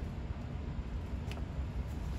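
Low steady hum with a few faint clicks as a plastic needle holder and tubing are handled and pushed into a glass diluent bottle.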